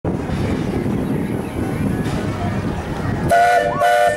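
Disneyland Paris Railroad steam locomotive running with a steady rumble, then its chime whistle sounding two short blasts near the end.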